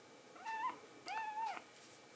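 A young kitten meowing twice while being bottle-fed: a short high call, then a longer one that rises and falls.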